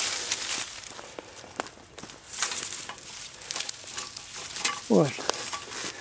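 Dry grass and brush crunching and crackling underfoot as someone walks, with scattered small clicks and snaps. A brief voice sound falling steeply in pitch about five seconds in.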